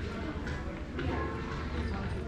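Footsteps at a walking pace, about two a second, over the steady hum and murmur of an indoor shopping mall with distant voices.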